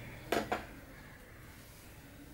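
Small stainless steel bowl set down on the table, giving two quick, ringing metallic clinks close together.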